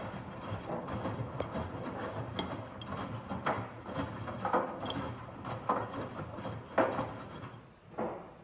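Drum of a Miele Professional PW 6065 Vario commercial washing machine tumbling wet laundry during the last rinse. The load drops and swishes in the drum about once a second, with light clicking and rattling in between.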